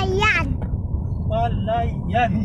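Steady low rumble of a moving vehicle heard from on board, with high-pitched voices talking over it.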